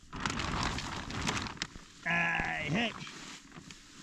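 Dry straw rustling and crunching as it is shovelled, then a single loud bleat about two seconds in, lasting under a second.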